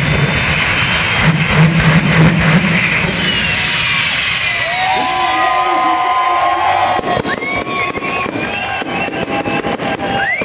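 A race car burning, its fire crackling and popping, with an engine running underneath for the first three seconds. Later come a hiss, long steady pitched tones and crowd voices.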